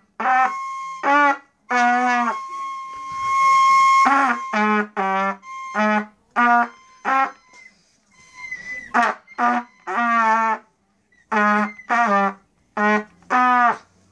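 A beginner blowing a trumpet in a string of short, separate notes, most on the same low pitch with a few higher ones, broken by a short pause about halfway through.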